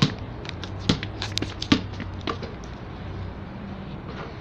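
Irregular clicks and taps, mostly in the first two and a half seconds, over a low steady hum.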